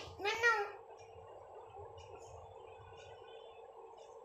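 A single spoken word, then the steady hum of an electric blower heater running.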